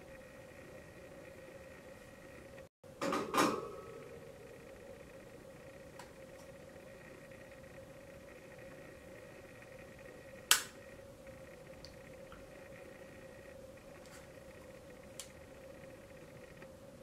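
Quiet room with a steady low electrical hum, broken by a short burst of noise about three seconds in and a single sharp click about ten seconds in, with a couple of faint ticks later.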